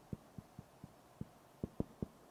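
Whiteboard marker strokes against the board: a string of soft, irregular taps, about eight of them, as characters are written.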